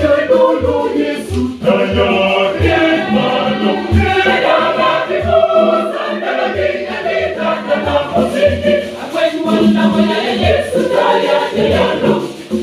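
A mixed choir singing in parts, accompanied by a pair of conga drums struck in a steady beat about twice a second.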